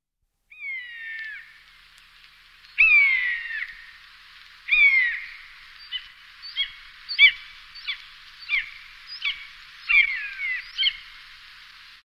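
Common buzzard (Buteo buteo) mewing: a few long calls falling in pitch in the first five seconds, then a run of shorter calls about one and a half a second.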